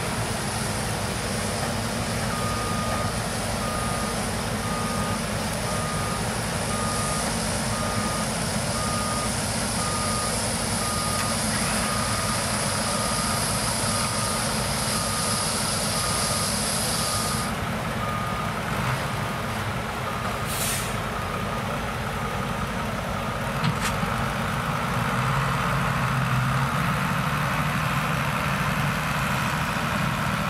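New Holland CX combine harvester running steadily while threshing maize through a Geringhoff corn header. A reversing beeper sounds about once a second from a couple of seconds in until past two-thirds of the way through, a high whine cuts off suddenly about halfway, and a short hiss comes a few seconds later.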